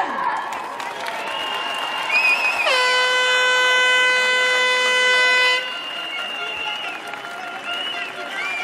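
A horn sounding one long, steady blast of about three seconds, the loudest thing here, over the noise of a crowd. Thin high whistling tones come before and after it.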